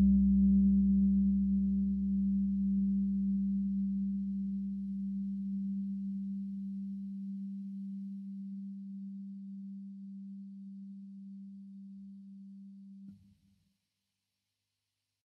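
Ambient meditation music dying away at its close: one sustained low tone with faint overtones fades slowly. A deeper drone under it drops out about halfway through, and the sound cuts off about a second before the end.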